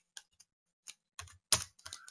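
Computer keyboard being typed on: separate key clicks, a few spaced-out strokes, then a quicker run of keystrokes in the second second.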